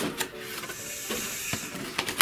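Cardboard box flaps and panels being handled: a sharp click, then cardboard rubbing and sliding against cardboard for about a second, and another click near the end.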